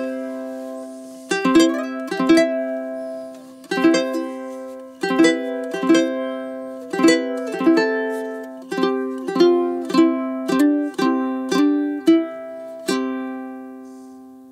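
Kamaka HF3 solid koa tenor ukulele in high-G tuning, strummed through a chord progression, each chord ringing out between strums. The last chord is struck about a second before the end and left to ring and fade.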